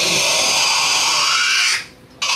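A loud, harsh, breathy screech blown into cupped hands at the mouth, held steady and cut off abruptly shortly before the end.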